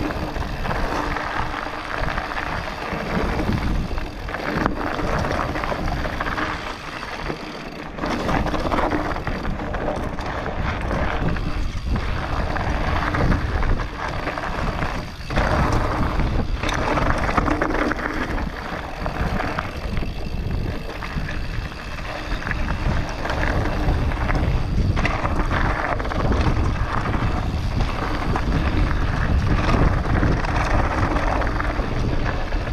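Wind buffeting the microphone of a camera on a mountain bike descending a dirt singletrack, with the tyres rolling over the dirt and the bike rattling over bumps.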